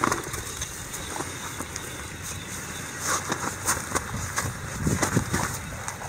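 Steady outdoor noise with scattered small crunches and rustles, like handling on snow and ice.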